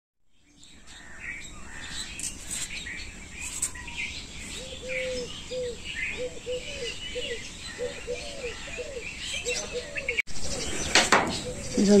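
Several birds chirping and calling, one of them repeating a short low call about twice a second through the middle. Near the end the sound breaks off sharply and picks up louder.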